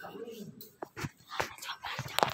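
Folded origami paper being handled and creased, giving a run of sharp crackles and clicks, after a short wavering whine at the start.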